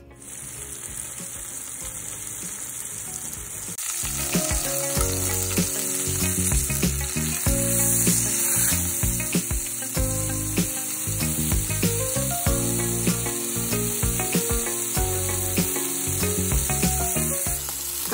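Beef top round roast searing in hot oil in an enameled cast-iron Dutch oven: a steady sizzle that grows louder about four seconds in, with scattered light clicks of metal tongs against the pot as the meat is turned.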